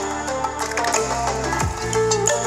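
Electronic dance music with deep kick drums and sustained synth and bass notes, played through a homemade two-driver Bluetooth speaker built around an HF69B amplifier board and picked up by a studio microphone.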